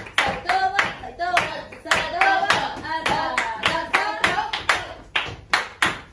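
Flamenco palmas: hands clapping together in a quick, steady rhythm, about three to four claps a second, with voices calling out between the claps.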